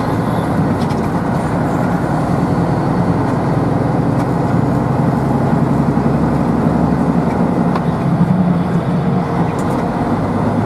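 Steady engine drone and road noise of a vehicle driving along a road, heard from inside the vehicle.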